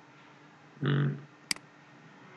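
A single sharp computer mouse click about one and a half seconds in, clicking the simulation step button. Shortly before it comes a brief vocal 'mm' from a man.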